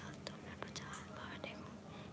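A faint, low voice, close to a whisper, with a few small ticks.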